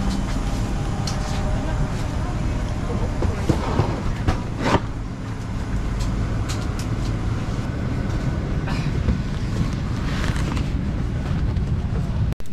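Steady hum and rush of a parked Boeing 737's cabin air system, with scattered clicks and knocks from passengers boarding.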